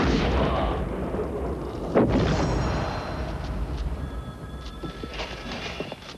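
Two heavy booms, one at the start and one about two seconds in, each followed by a long rumbling decay that slowly fades, as in an action film's blast or crash sound effect.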